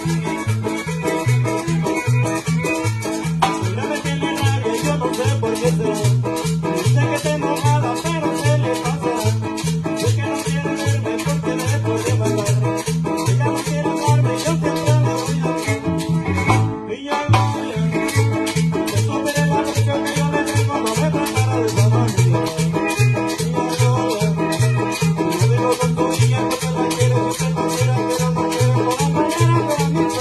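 A chanchona band playing live: a low bass line alternating between two notes about twice a second, under guitar and congas with a fast, steady percussion rhythm. The sound drops out briefly about seventeen seconds in.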